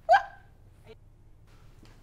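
A single short, surprised exclaimed "What?" with a rising pitch, then quiet room tone.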